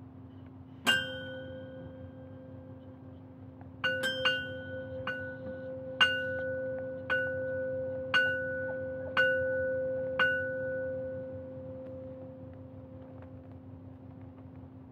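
A small bell-like metal percussion instrument struck and left to ring, at the same pitch each time. There is one strike about a second in, then, after a pause, a run of strikes about once a second, the last ring fading out toward the end. A steady low hum lies beneath.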